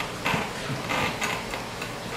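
Jolly Jumper baby bouncer clicking and creaking as the baby bounces in it: a few soft, irregular knocks.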